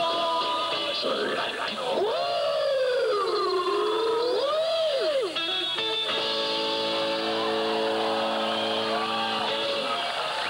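Live rock'n'roll band sound between numbers: an electric guitar bending notes in long swooping glides, then from about six seconds in a chord held and ringing on.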